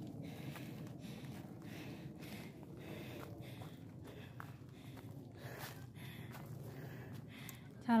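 Footsteps of several hikers climbing a dirt trail and rough stone steps, with faint irregular scuffs and knocks over a steady low rumble. Faint voices can be heard in the background.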